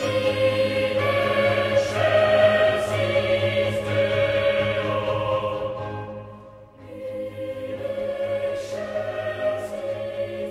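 Background music of choral singing over a low held note; one phrase fades out about six and a half seconds in and a new one begins.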